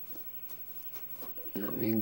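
Quiet room with a few faint, light handling rustles and clicks. About one and a half seconds in, a man's voice starts, a drawn-out word.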